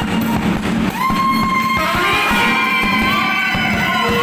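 Live dance music from a small band with violin, trumpet and drum over a steady beat. About a second in, a long high note starts and is held for a few seconds.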